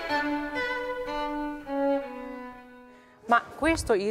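Baroque string ensemble playing a slow phrase of held, bowed notes that steps downward and fades away about three seconds in. A man's voice starts speaking just before the end.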